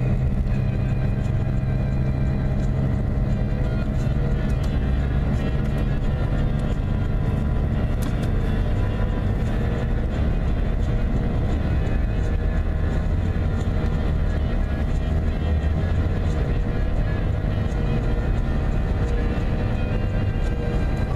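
Steady low road and engine rumble inside a moving car's cabin at highway speed, with music playing in the background.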